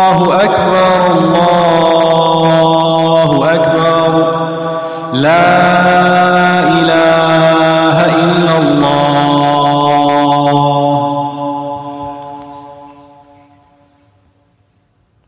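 A man's voice chanting the closing phrases of the adhan, the Islamic call to prayer, in long held melodic notes. A second phrase begins about five seconds in, and the voice fades out over the last few seconds.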